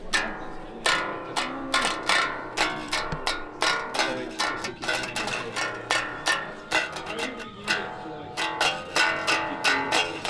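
Extended-range electric bass played through an amp in a djent style: a fast, uneven run of sharp, chugging plucked notes.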